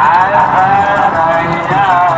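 A person's voice held in long, drawn-out tones that slide up and down in pitch, starting abruptly.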